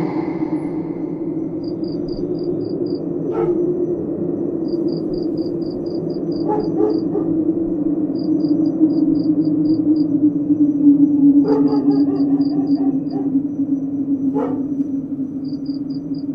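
Eerie horror ambience: a steady low drone with crickets chirping in short rapid trains every few seconds. A few brief sharp sounds stand out, one about three seconds in and others near the middle and towards the end.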